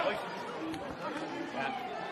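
Indistinct chatter and calls of several men's voices on a rugby pitch, with a low crowd murmur, as the forwards react to winning a scrum penalty.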